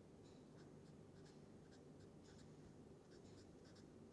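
Faint felt-tip marker strokes on paper: short, irregular scratches as small electron arrows are drawn in. A low steady hum runs underneath.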